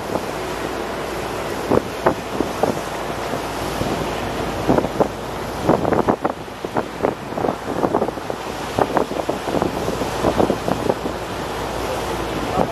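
Wind buffeting the microphone over the rush of sea water along a moving boat's hull, broken by frequent short, irregular splashes.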